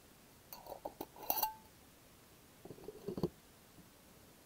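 Glass candle jar clinking and knocking against other items in a plastic storage bin as it is handled and set down. There is a cluster of light clinks with a brief ring about a second in, then duller knocks near three seconds.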